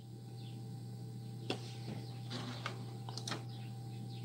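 Steady low hum of room or equipment noise, with a few faint short clicks scattered through it.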